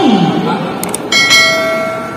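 A computer-mouse click sound effect followed about a second in by a bright bell ding that rings on: the sound effect of a YouTube subscribe-and-notification-bell overlay.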